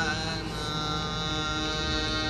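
Indian devotional concert accompaniment: a harmonium holds steady notes over a drone in a gap between sung lines. The singer's wavering note ends right at the start.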